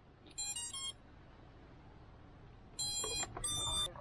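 Brushless drone motors sounding the 4-in-1 ESC's power-up tones: a quick run of rising beeps about half a second in, then a lower and a higher beep near the end, the ESC signalling that it has power and is ready.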